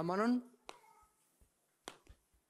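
Two sharp taps of chalk against a blackboard, a little over a second apart.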